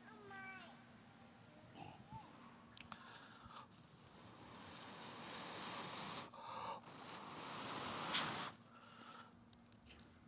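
Blowing into a wooden dish of smouldering leaves to fan the ceremonial smoke: a breathy hiss that builds over several seconds, breaks off briefly, and is loudest near the end. A brief falling, voice-like call comes at the very start.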